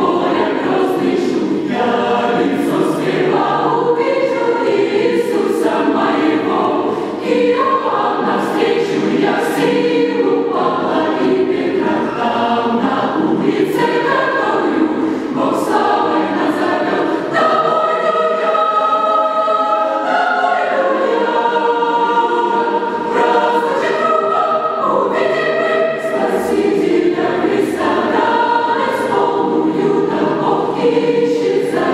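Mixed choir of men's and women's voices singing in parts. A little past the middle, the low voices drop out for a few seconds while the higher voices carry on, then the full choir returns.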